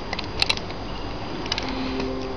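A few short, sharp clicks and taps of a collectible robot figure's hard parts being handled, the loudest about half a second in, over a steady background hiss.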